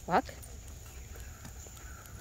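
A man's voice giving the one-word command "Walk" to a dog, then a low outdoor background with light footsteps on pavement.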